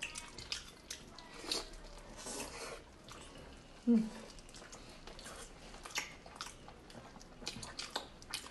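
Wet chewing and lip-smacking of people eating pork knuckle and noodles, with scattered small clicks from the mouth. There is one short hum about four seconds in.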